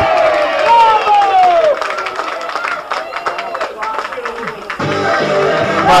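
Shouting voices and clapping as a penalty kick goes in for an equaliser, then music starts near the end.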